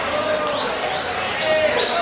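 Footballers calling and shouting to each other on the pitch in short bursts, with a few short thuds of the ball being kicked.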